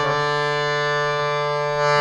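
D S Ramsingh harmonium with three banks of M T Mistry reeds, its reeds sounding one steady held chord that does not change.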